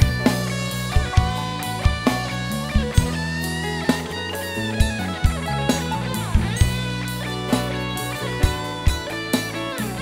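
Live band playing an instrumental passage: an electric guitar lead with sliding, bending notes over bass guitar and a steady drum-kit beat.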